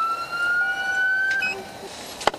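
Police car siren wailing as the cruiser signals the vehicle ahead to pull over for a traffic stop. Its pitch climbs slowly, then cuts off about one and a half seconds in.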